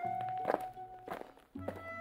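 Classical chamber music with held notes. A few sharp knocks fall between the notes, with a short break about a second and a half in before a new, lower chord begins.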